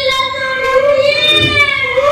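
A high voice singing one long, drawn-out note that wavers slightly in pitch.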